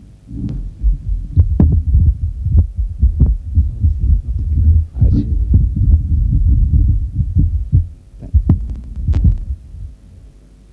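Microphone handling noise: irregular low thumps and rumble with a few sharp clicks, the lectern microphone being knocked or brushed.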